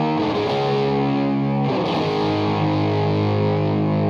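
Fender American Deluxe Stratocaster electric guitar playing a distorted lead through a pedalboard and amplifier. The notes are held long, with a new note picked just under two seconds in.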